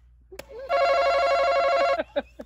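Electronic game-show buzzer sounding one steady, buzzy tone for just over a second, then cutting off.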